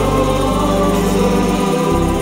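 Gospel worship music: a choir singing long held chords over a steady bass line.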